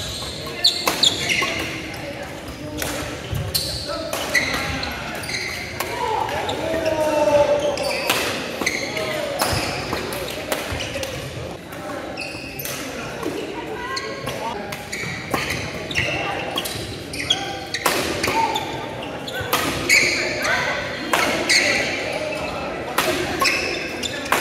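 Badminton doubles rallies in a large gym: repeated sharp racket strikes on the shuttlecock and court shoes squeaking on the hardwood floor, with players' voices and calls echoing in the hall.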